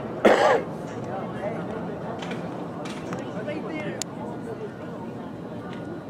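A short, loud human vocal burst close to the microphone about a quarter second in, most like a shout or cough from someone on the sideline. After it come faint, scattered voices over steady outdoor background noise.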